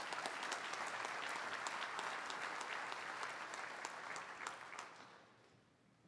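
Audience applauding, with individual claps standing out, dying away about five seconds in.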